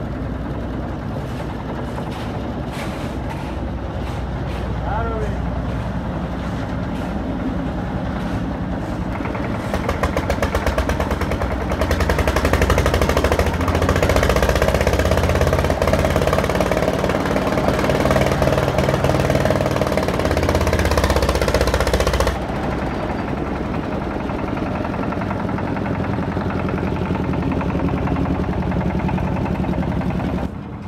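Engine-driven drum concrete mixer running under load with a rapid, even knocking beat. It grows louder about a third of the way through while the drum turns and discharges, then drops suddenly about three-quarters of the way in.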